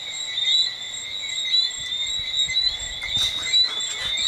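A steady, high-pitched chirping chorus of night-calling creatures, pulsing without a break. In the second half there is some low rumbling and a few soft knocks.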